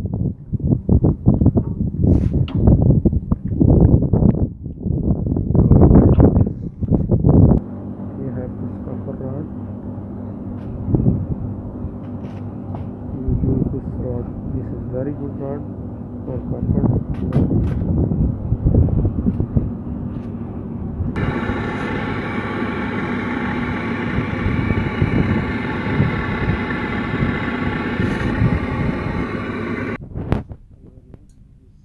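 Talking for the first several seconds, then a steady mechanical hum that becomes louder and fuller about twenty seconds in.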